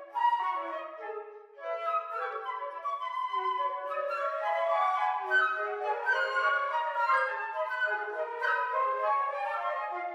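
Four flutes playing together in a quick, interlocking passage of short notes, with a brief dip about a second and a half in.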